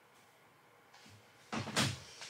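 Near-quiet room, then about one and a half seconds in, a short burst of rustling and a soft bump as a person moves toward the camera.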